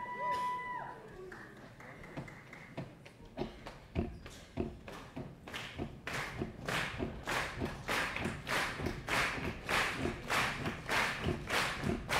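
Audience stomping and clapping a steady beat together, scattered at first, then louder and tighter over the last several seconds as the crowd locks into time. A short high whistle-like tone sounds at the very start.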